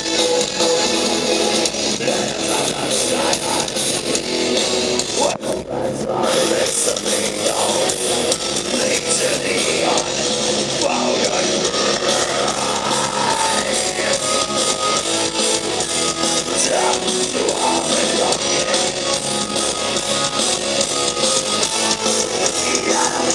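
Heavy metal band playing live, loud distorted electric guitars and drums heard from the audience, with a brief drop in the sound about five seconds in.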